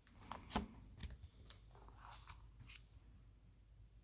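A plastic pocket page in a trading-card binder being turned, crackling and snapping in a few sharp bursts. The loudest snap comes about half a second in, and the page has settled by the last second.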